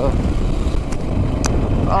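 Yamaha WR426 dirt bike's four-stroke single-cylinder engine running steadily as it rides along a hard-packed dirt and gravel road, with wind rumble on the helmet microphone. Two sharp clicks about one and one and a half seconds in.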